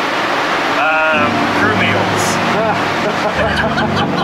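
Steady jet airliner cockpit noise with brief bits of voice. About a second in, music with long held notes begins and continues under the noise.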